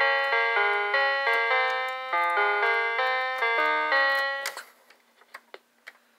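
Electronic keyboard playing a short melody of single sustained notes, about two to three a second, which stops about four and a half seconds in.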